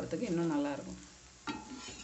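Drumstick-leaf adai frying on a cast-iron tawa, a faint sizzle. A voice is heard over it in the first half-second and again about one and a half seconds in.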